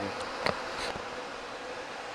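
Faint steady buzzing hum over low background noise, with a single light click about half a second in.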